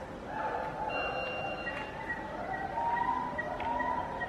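Indistinct, muffled murmur of people's voices in the background. Faint short high chirps repeat about three times a second in the second half.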